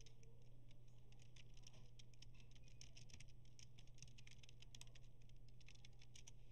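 Computer keyboard being typed on: faint, rapid, irregular key clicks over a steady low hum.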